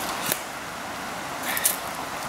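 Steady rushing of river water, with two short scuffs close by, the second about a second after the first.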